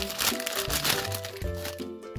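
Foil blind-bag toy wrapper crinkling and crackling as it is handled, over steady background music.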